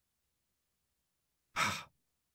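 Dead silence for about a second and a half, then one short breath into a close microphone.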